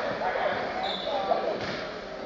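Basketball being dribbled on a hardwood gym floor at the free-throw line, under the murmur of crowd chatter in the gym.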